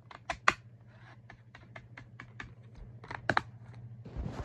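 A quick run of light clicks, about six a second, like typing or clicking, with two louder clicks, one about half a second in and one near the end. A steady low hum runs beneath them.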